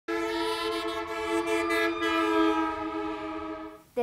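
A sustained horn-like chord of several steady tones, starting suddenly and fading away near the end.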